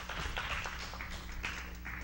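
A congregation applauding: scattered, irregular hand claps, fairly quiet, over a low steady hum.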